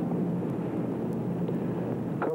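Steady rushing outdoor background noise with a low hum underneath, cutting in suddenly at full level as the sound switches to an open field microphone.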